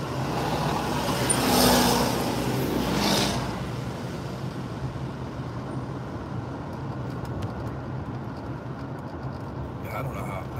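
Road and engine noise inside a moving car, with an oncoming truck passing close by: its noise swells and fades over the first few seconds, loudest about two seconds in, and a second vehicle passes just after. Then steady cabin road noise.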